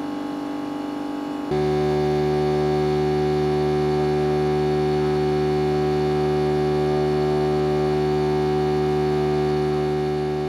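Homemade four-coil electromagnetic motor with Hall-sensor switching running, giving a steady electric hum of several tones. About a second and a half in, the hum jumps louder and settles on a new steady pitch.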